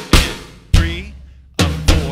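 Drum kit toms struck one stroke at a time at a slow practice tempo, each hit ringing out with a low drum pitch. There are four strokes, the last two close together near the end.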